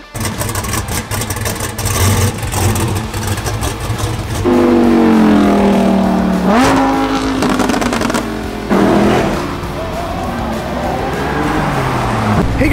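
Supercar engines revving hard as cars accelerate away along a street. One engine's loud, pitched exhaust note stands out from about four and a half seconds in: it sags in pitch, then jumps up and holds.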